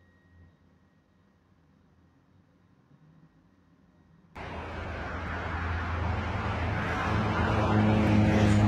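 Near silence for about the first four seconds, then a car's engine and road noise heard from inside the cabin cut in suddenly: a steady low hum under a wash of noise, growing louder.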